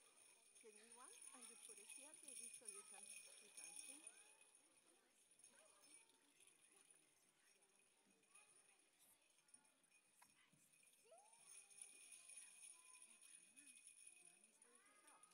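Faint jingle bells being shaken, with small children's voices calling and babbling. Both are louder in the first few seconds and again near the end.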